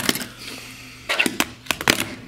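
Fingerboard clacking on a desk top: one sharp click at the start, then a quick run of about four clacks of the deck and wheels near the end as the board is popped and lands.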